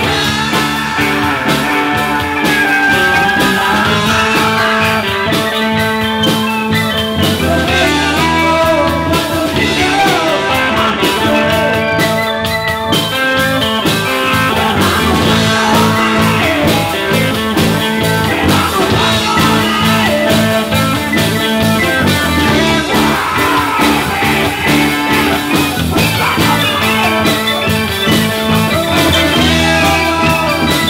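Live blues-rock band playing, with a harmonica played through the vocal microphone over electric guitar, bass guitar, drums and keyboards.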